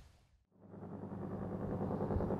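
A moment of near silence, then a steady low hum fades in and holds.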